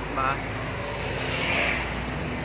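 Vehicle engine idling with a steady low hum.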